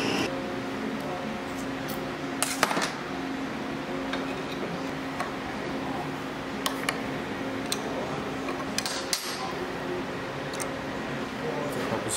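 Scattered metal clinks and knocks from hydraulic pump parts being handled on a workbench and a pump compensator being set in a steel bench vise, over a steady low hum.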